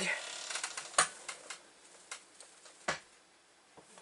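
Tarot cards being handled: a soft rustle of sliding cards, then a few sharp taps.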